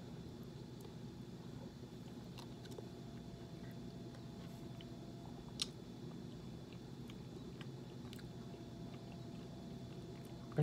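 Faint chewing of a mouthful of chili over a steady low hum, with one sharp click a little past halfway.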